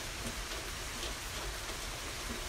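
Steady, even background hiss with a low rumble underneath, no distinct sounds standing out.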